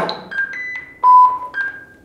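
A single sharp tap of an impulse hammer with a hard plastic tip on a lawnmower's handle, with a short ringing tail. It is followed by a run of short electronic beeps at different pitches, the loudest and lowest about a second in.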